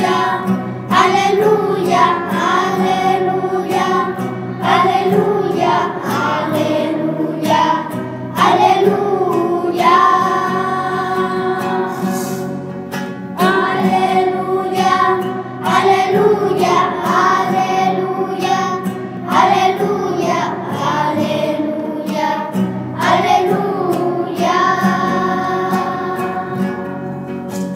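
Church choir singing a liturgical hymn in phrases, accompanied by guitar.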